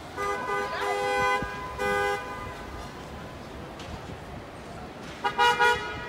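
Two-note car horn honking over city street traffic: a long honk of about a second, a short one right after, then a quick run of short toots near the end.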